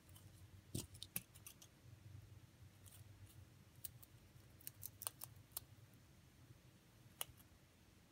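A rabbit biting at a dry pinecone, the scales cracking crisply under its teeth. Short, sharp cracks come in small clusters: several in the first two seconds, more around five seconds in, and one last one near the end.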